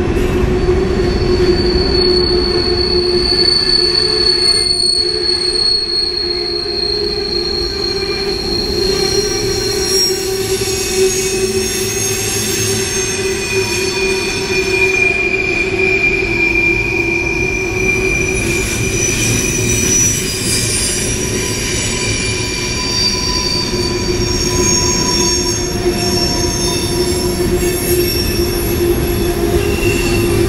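CSX freight train rolling by, its wheels squealing against the rails in long, thin high-pitched whines that drift slowly in pitch, over a steady low drone.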